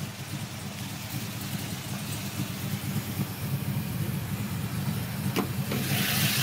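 SS wagon's V8 engine idling steadily, growing a little louder toward the end, with a single click shortly before the end.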